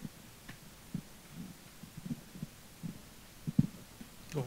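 Microphone handling noise: soft, irregular low thumps, with a louder one about three and a half seconds in.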